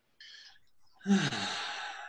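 A person's audible sigh: a short breath in, then about a second in a long, loud breathy exhale with the voice falling in pitch, fading away.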